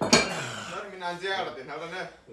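Barbell with iron weight plates set down on the floor: one sharp metallic clank right at the start, followed by a man's voice.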